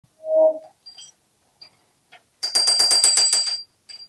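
A short, loud, low note near the start, then an African grey parrot clinking a metal teaspoon against a cultured-marble vanity top: a couple of single clinks, then a rapid clatter of about ten strokes a second for over a second, with the spoon ringing at a high pitch throughout.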